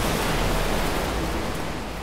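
Ocean surf washing onto a beach: a steady hiss that fades slightly toward the end.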